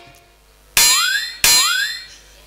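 Two identical comic 'boing' sound-effect hits about 0.7 s apart, each a sharp twanging attack whose pitch slides upward and then fades.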